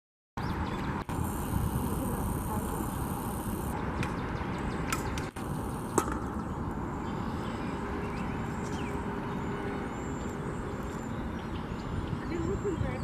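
Steady outdoor background noise with a low rumble, a couple of sharp clicks around the middle, and faint high chirps in the second half. The sound drops out briefly about a second in and again about five seconds in.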